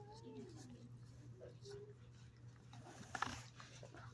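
Soft, short gliding vocal sounds near the start and again briefly mid-way, then one sharp click about three seconds in, over a steady low hum.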